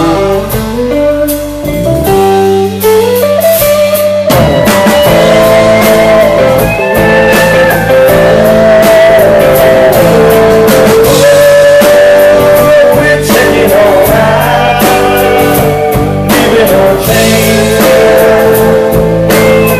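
Live rock band playing at full volume: electric guitars, bass and drums, with a man singing lead. The band thins out briefly about two seconds in, then comes back in full.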